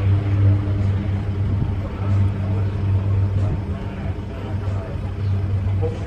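Skydiving plane's propeller engine running with a steady, even low drone as it gets under way.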